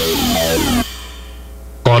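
Electronic radio-jingle music ending in falling sweeps, then dropping to a quiet low hum for about a second before a voice and music come in loudly near the end.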